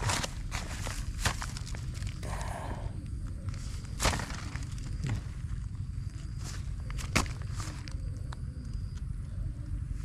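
Handling of a wire-mesh snake trap in grass: scattered clicks and knocks of the wire cage with rustling and footsteps, the sharpest knock about four seconds in.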